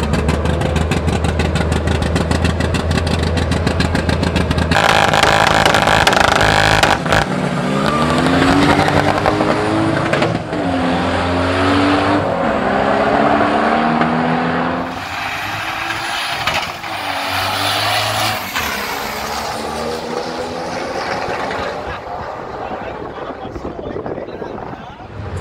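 Two drag-race cars on the start line, engines running with a fast, even firing pulse. About five seconds in they launch at full throttle, the engine pitch climbing and dropping back at each of several gear changes. The sound fades as the cars pull away down the strip.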